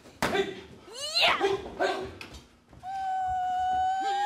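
Animal cries as in a fight: two sharp cries sliding down in pitch in the first half, then from about three seconds in a long held yowl that climbs in pitch at its end.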